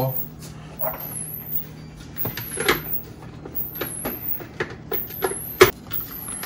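Scattered plastic clicks and knocks as the lid and motor top of a small yellow electric blender are fitted onto its jar, the loudest knock near the end, over a faint steady hum.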